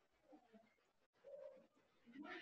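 Near silence, with a faint low call lasting about half a second a little past the middle.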